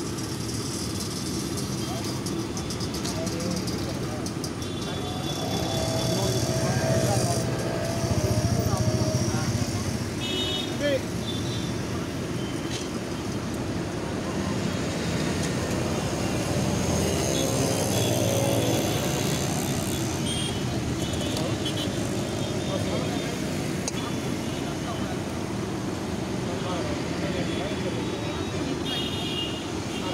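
Busy roadside street ambience: steady traffic noise with short vehicle horn toots now and then, and indistinct background voices.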